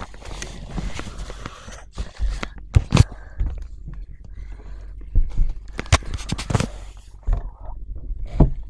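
Rustling and scraping broken by several sharp knocks, the loudest about three seconds in and again around six seconds in.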